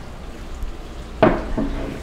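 Low steady background hum, then a brief non-word vocal sound from a woman a little over a second in.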